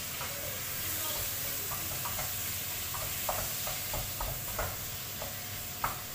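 Food sizzling in a frying pan while being stirred with a spatula, with a steady hiss and a scattering of short scrapes and taps of the utensil against the pan from about two seconds in.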